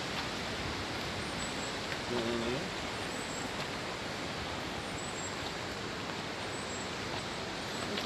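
Steady, even rush of a muddy river in flood, with a brief voice about two seconds in.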